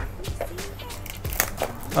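Quiet background music, with a couple of light knocks about one and a half seconds in from a cardboard trading-card blaster box being handled.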